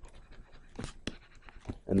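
A man drawing a quick breath about a second in, among faint scattered clicks; his voice comes back at the very end.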